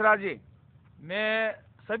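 Men's speech: a spoken question ends, and after a short pause another man starts his answer with one long, drawn-out vowel of about half a second before speaking on.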